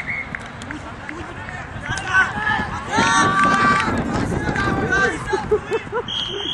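Several voices shouting and calling out during a touch rugby game, loudest for about a second in the middle.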